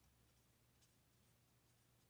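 Near silence: room tone with a faint low hum and a few faint, short ticks.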